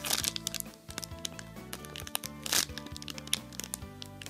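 Clear plastic packaging bag crinkling as the squishy toy sealed inside it is handled, in short crackles, the loudest right at the start and about two and a half seconds in. Background music with sustained notes plays under it.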